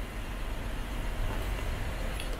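Steady low rumble of a car heard from inside the cabin, with no distinct knocks or changes.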